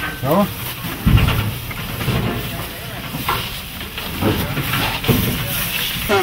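Dry grain feed poured from a bucket into a cattle feed trough, a steady hissing rush with a dull knock about a second in.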